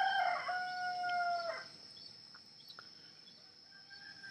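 A bird crowing once: a few short stepped notes, then one long held note that drops away about a second and a half in.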